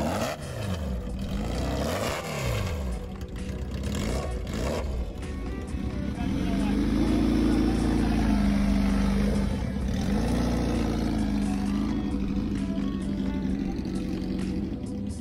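Motorcycle engine of a custom BMW K1100 LT cafe racer running: its pitch sweeps down and up in the first few seconds, then it is revved up about six seconds in and held, dipping and rising again near ten seconds.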